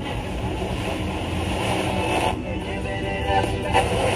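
An engine running steadily, with voices coming in near the end.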